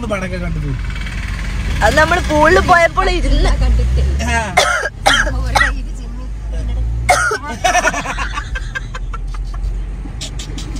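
People talking over the steady low rumble of a car on the move.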